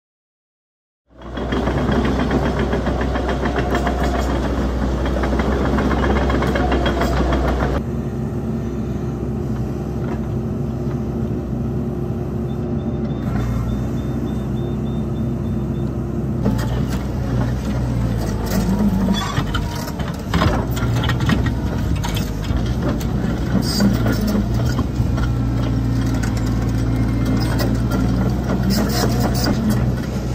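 Diesel engine of a Cat crawler excavator running under working load, starting about a second in, with occasional knocks and scrapes from the attachment working the ground.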